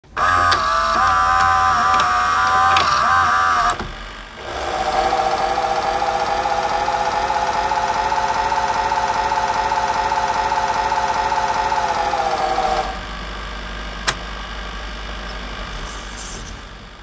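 Electronic buzzing drone in two stretches. A higher buzz lasts about three and a half seconds, breaks off briefly, then a lower steady buzz runs until about thirteen seconds in. It gives way to a quieter low hum with a single click near fourteen seconds.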